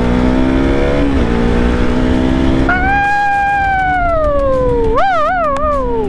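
KTM RC 200's single-cylinder engine pulling up through the revs, dropping briefly about a second in as a gear changes, then climbing again. From about three seconds in, a loud high tone of unknown source rides over the engine, falling slowly in pitch and wavering three times near the end.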